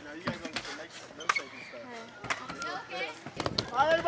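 Several people talking and chanting over one another, with a few sharp knocks of skateboards on concrete.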